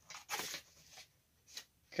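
Paper and cardboard rustling in a few brief scrapes as a paper slip is pulled out of a small cardboard box.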